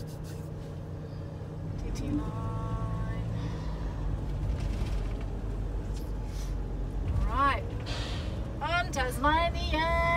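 Low engine rumble heard inside a vehicle cabin, growing louder about two seconds in as the vehicle pulls away and drives on. A brief steady tone sounds early on, and voices come in near the end.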